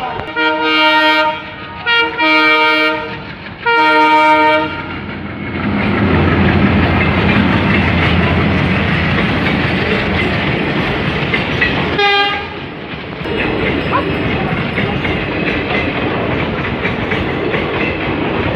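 Train horn sounding three blasts in the first five seconds, then the train running along the track with a steady rumble and wheel clatter. A short horn toot comes about twelve seconds in.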